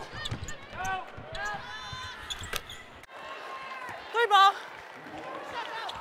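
Live basketball game on a hardwood court: a ball bouncing in sharp knocks, with players' voices calling out in the background and one short, loud shout a little after four seconds in.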